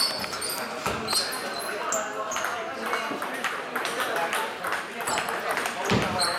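Table tennis balls clicking off bats and the table in an irregular patter of sharp pings, from the rally at the near table and others nearby in the hall, over a background of people talking.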